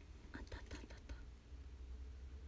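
Faint, scattered clicks of small metal earrings being handled and sorted, over a steady low hum.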